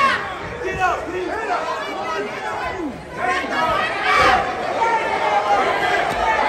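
A crowd of fight spectators shouting and calling out over each other, many voices at once, swelling again about three seconds in.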